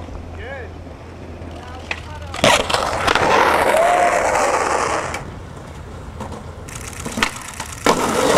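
Skateboard on concrete: a sharp clack about two and a half seconds in, then loud wheel roll on rough concrete that fades after about five seconds, and another hard clack just before the end.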